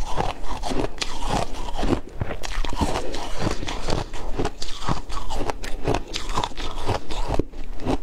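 A person crunching and chewing a mouthful of shaved ice, in a dense, irregular run of crisp crunches.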